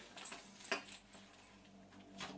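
Faint rustling and a light click as a shoulder bag and its strap are handled, over a faint steady hum.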